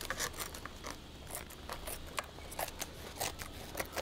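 Hand scissors snipping the soft lining sheet around a carbon fiber skate shell: a quick, irregular run of short, sharp snips, several a second.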